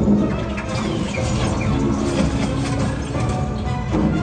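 Loud soundtrack music of an animated theatre show, with sound effects mixed in; a few short high chirping glides come between one and two seconds in.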